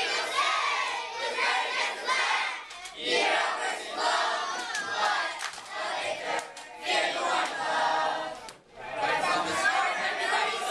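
A large group of boys chanting loudly in unison from lyric sheets, shouted phrases broken by a few short pauses.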